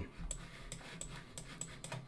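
About six faint, sharp computer clicks spread irregularly over two seconds, made while an online map is being moved on screen, over a low steady hum.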